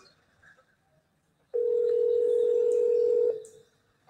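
Telephone ringback tone: one steady ring of about two seconds, starting about a second and a half in, heard by the caller while an outgoing call rings unanswered at the other end.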